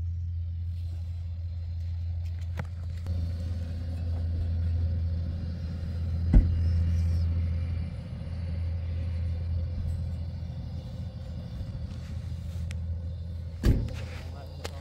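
Multi-ring gas burner fed from a gas cylinder, burning with a steady low rumble. There is a sharp knock about six seconds in and another near the end.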